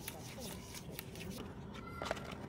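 Light clicks and taps of cats' paws and claws on a plastic pet carrier and its wire door as the cats swipe at each other through the doorway, coming thick at first and thinning out after about a second.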